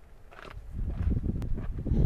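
A person scrambling up rock right by the microphone: scuffs, scrapes and knocks of hands and shoes on stone over a low rumble, growing louder as she comes closer, with one sharp click about one and a half seconds in.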